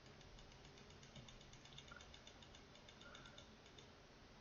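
Faint, rapid ticking of a computer mouse's scroll wheel, several even clicks a second, in near silence.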